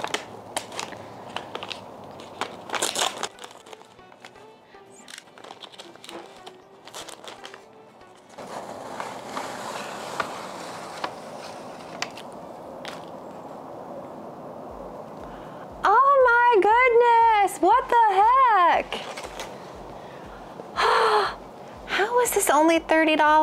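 Kraft paper bag crinkling and rustling as a plant is unwrapped from it, loudest in the first few seconds, then softer handling of the wrapping. About fifteen seconds in, music with a steady beat comes in, with a sung or melodic line.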